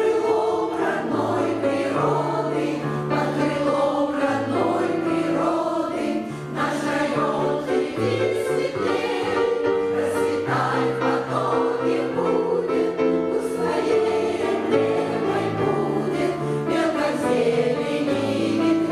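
A choir of elderly women singing a lyrical song in parts, over low held notes that change every second or two.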